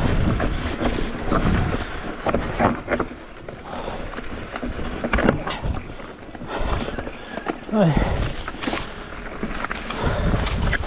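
Electric mountain bike rolling downhill on a rough forest singletrack: tyre noise on dirt and leaves with frequent knocks and rattles from the bike, and wind buffeting the camera microphone.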